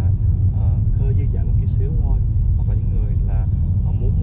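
Steady low rumble of road and engine noise inside a moving car's cabin, with a man's voice talking over it.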